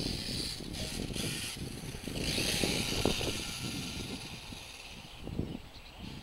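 Electric 1/10-scale RC touring car running on the track: a high, thin whir of its motor and gears that swells about two seconds in as the car comes nearer, then fades off, over a low rumble.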